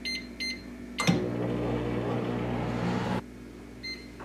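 Microwave oven keypad beeping twice as buttons are pressed, then a click as the oven starts and a steady hum as it runs for about two seconds before cutting off. A single short beep sounds near the end.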